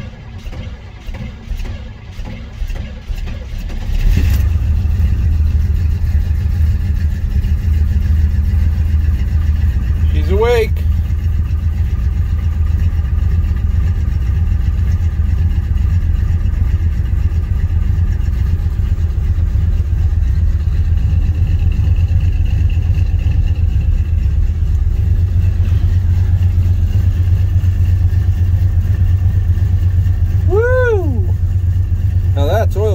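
The 1978 Chevrolet C10's 350 small-block V8 on a cold start after sitting for months: it runs unevenly for the first few seconds, then catches about four seconds in and settles into a loud, steady run.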